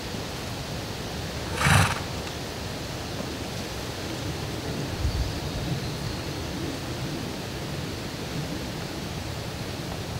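A horse gives one short snort about two seconds in, over a steady background hiss.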